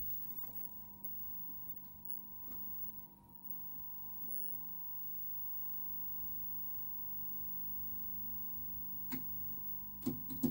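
Faint steady high tone with a low hum underneath, as from an old Philips KT3 colour television running on a test card signal; a single click about nine seconds in.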